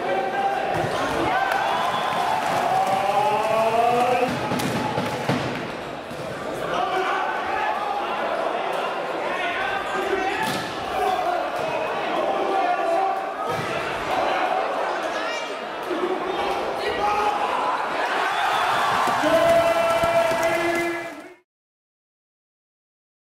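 Indoor volleyball rally: the ball is struck hard by hand several times, sharp smacks echoing in a sports hall, over continuous voices from players and crowd. The sound cuts off abruptly just before the end.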